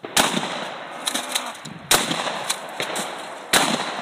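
Gunshots: three loud shots roughly a second and a half to two seconds apart, each followed by a noisy tail, with several fainter cracks in between.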